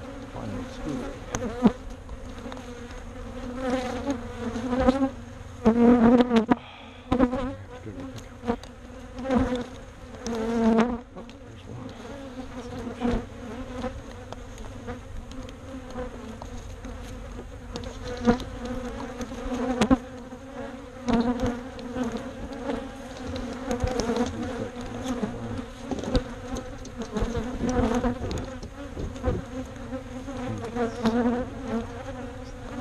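Honey bees buzzing around the microphone: a steady hum of many bees, with single bees swelling loudly for a second or so as they fly close past. The swells come several times in the first third and again about two-thirds of the way through.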